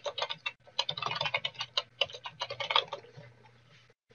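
Computer keyboard typing: a fast run of key clicks for about three seconds, then thinning out.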